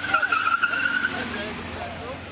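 Ambulance pulling up amid a noisy crowd, with shouting voices and a high steady whine that stops a little over a second in.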